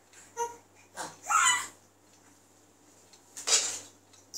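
A baby's short, high-pitched coos and squeals, a few separate sounds with pauses between, the loudest about a second and a half in and again near the end.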